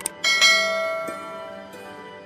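A quick double click, then a bell chime struck a moment later that rings out and fades over about a second and a half: the click-and-notification-bell sound effect of a subscribe animation.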